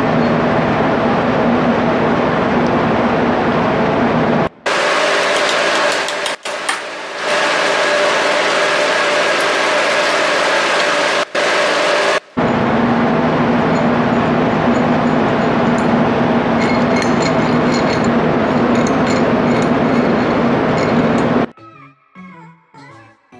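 Loud, steady machinery noise with a constant low hum. It comes in edited segments that break off briefly about four and a half, six, eleven and twelve seconds in, with a thinner, quieter stretch in the middle, and it cuts off just before the end.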